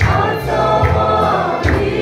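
Mixed choir of women and men singing a Mizo gospel song in parts, with a steady low beat underneath about every 0.8 seconds.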